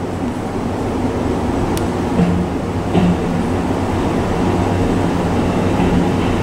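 Interior running noise of a Kintetsu 23000 series Ise-Shima Liner train on the move: a steady rumble and hum, with a few light clicks from the wheels over the track.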